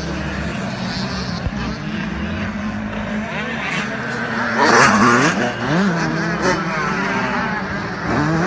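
Motocross dirt bike engines revving and changing gear around the track. The pitch rises and falls, and the loudest rev comes about five seconds in.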